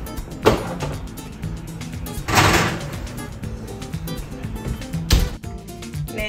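A covered pan loaded into a wall oven: a clunk, a scraping slide of the pan and oven rack going in, then the oven door shut with a knock about five seconds in, over background music.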